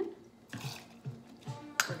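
A sharp click of a metal jigger being set down on a granite countertop near the end, after a soft hiss about half a second in.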